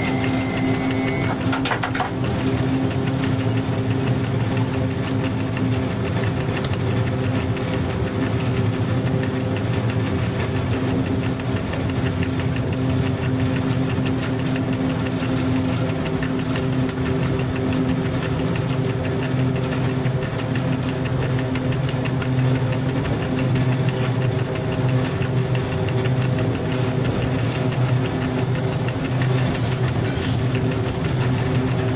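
Cab of an FS E.636 electric locomotive under way: a steady electric hum of its motors and blowers over a fast, even rattle of the running gear on the track.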